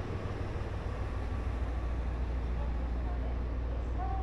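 Steady low rumble of a railway station platform, with the hum of standing trains and a faint distant voice.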